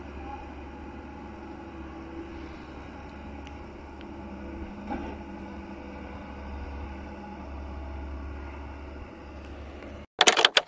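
Excavator's diesel engine running steadily, a low drone with a faint click about five seconds in.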